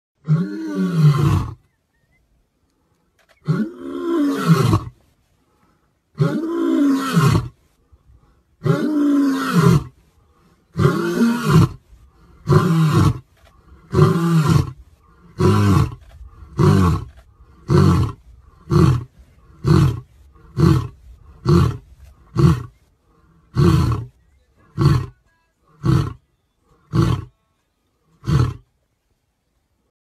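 Male lion roaring: a few long, full roars about two and a half seconds apart, then a run of shorter grunts that come faster, about one a second, and stop near the end.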